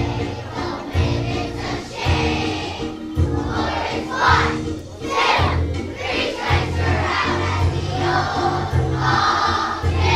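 A large children's choir singing a sing-along song together over a steady instrumental accompaniment with a repeating bass line.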